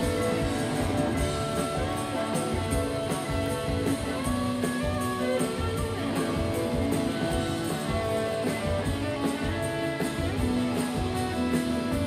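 A live rock band playing through a concert PA, heard from the audience: strummed electric and acoustic guitars over a drum kit keeping a steady beat.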